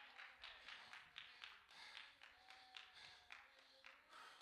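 Near silence: room tone with faint, evenly spaced taps, about four a second.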